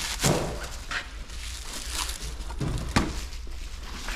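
Workshop room noise: a low steady hum with a few scattered knocks and clicks. The sharpest one comes near the end.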